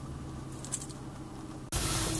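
Low, steady hum of a van idling, heard from inside the cabin, with a couple of faint clicks. Near the end it cuts abruptly to louder road and engine noise from the van driving.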